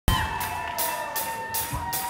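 Intro of a live rock song: cymbal strokes on the drum kit in an even pulse, about two and a half a second, over a held keyboard tone.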